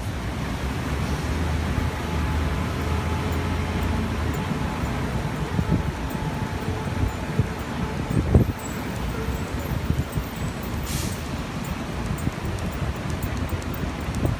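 Steady city background noise, mostly a low traffic hum, with a few dull thumps around the middle.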